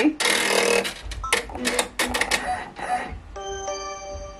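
Embroidery machine stitching chenille yarn, a run of quick irregular clicks, over background music; a steady held chord comes in near the end.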